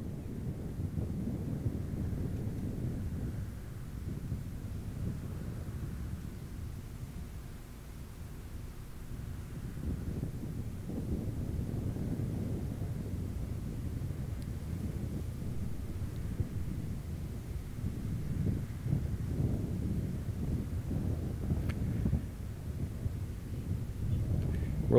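Low, uneven rumble of a Boeing 747's jet engines on final approach, heard at a distance and mixed with wind buffeting the microphone.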